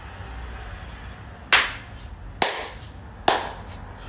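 Three single hand claps, slow and evenly spaced about a second apart, each sharp with a short ringing tail.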